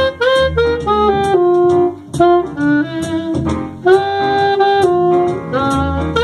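Cannonball Stone Series Big Bell alto saxophone playing a slow jazz melody, a run of short connected notes moving up and down with a longer held note about two thirds of the way through.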